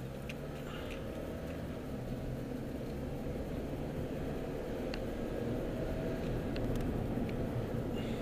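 Engine and road noise of a moving car heard from inside its cabin: a steady low rumble that grows slightly louder as the car drives on.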